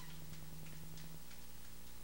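Steady low electrical hum and hiss with faint, irregular ticks, and no music playing; a higher hum tone drops out a little past halfway.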